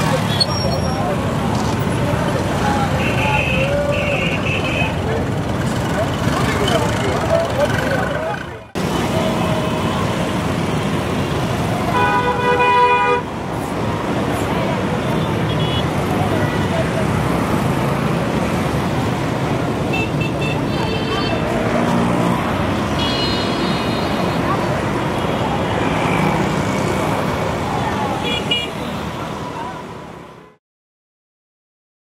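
Busy city street traffic of motorcycles and cars, with people talking and short horn toots scattered through. One longer, louder horn blast comes about twelve seconds in, and the sound fades out at the end.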